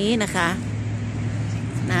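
A steady low hum from a running motor, unchanging throughout, with a woman's voice speaking briefly at the start and again at the very end.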